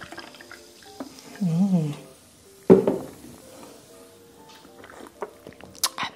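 Mirinda orange soda poured from a can into a glass mug, the liquid splashing and fizzing, tailing off in the first second. Then a short wavering hum, and near the middle a sudden short vocal sound, over faint background music.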